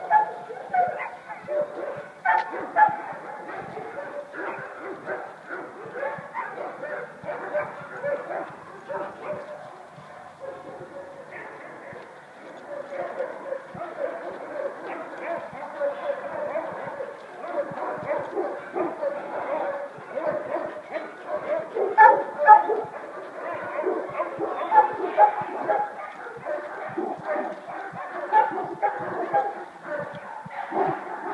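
Dogs barking and yipping, with a few sharp, louder barks near the start and about three-quarters of the way through.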